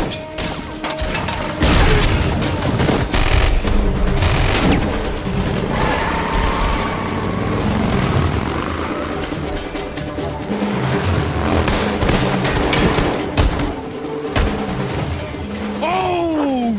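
Action-film soundtrack: the music score runs throughout under repeated gunfire and heavy booms.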